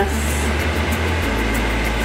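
Background music: a low bass line that changes note about a second in, over a light, even beat.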